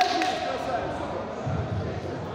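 Dull thuds of feet and bodies on a padded wrestling mat, clustered about one and a half seconds in, under voices in an echoing sports hall.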